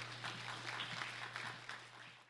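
Audience applauding, a dense patter of many hands clapping, over a steady low electrical hum.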